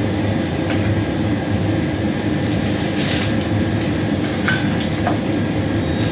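Steady low rumble of shop background noise, with a few light clicks of goods handled on the checkout counter and a brief rustle of a plastic carrier bag about three seconds in.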